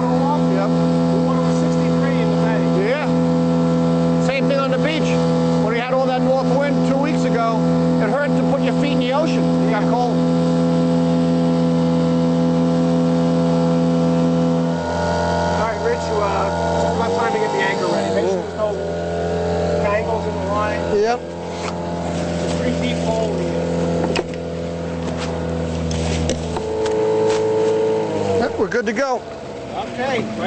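A skiff's outboard motor running under way at a steady pitch; about halfway through its note drops as it is throttled back, and it slows further and cuts out shortly before the end.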